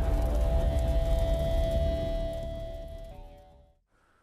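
Intro music: a deep low rumble under a few long held tones, fading out near the end.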